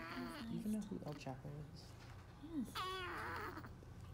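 Newborn baby fussing with two short cries, one at the start and another about three seconds in that falls in pitch.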